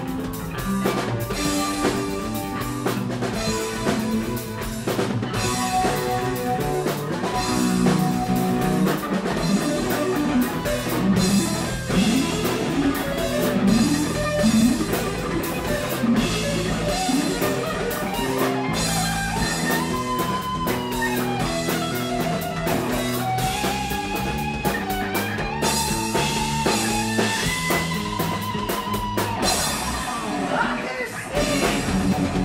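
Live rock band playing: electric guitars, bass guitar and a drum kit with a steady beat. In the last third a gliding, wavering lead melody rises above the band.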